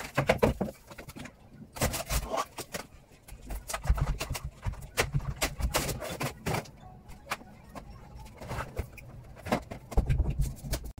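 Scattered knocks, cracks and bangs of a wooden wall cabinet being pulled and pried off the wall, in several clusters of sharp impacts with short quieter gaps between.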